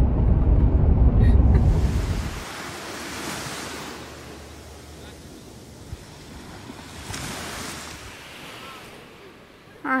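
Low road rumble inside a moving car for about the first two seconds, then gentle surf: small, calm waves washing up on a sandy shore, swelling twice.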